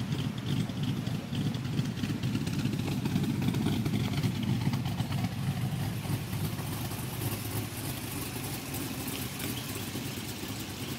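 Holden Commodore SS wagon's V8 idling steadily through its quad-tip exhaust, a little louder for a few seconds in the middle.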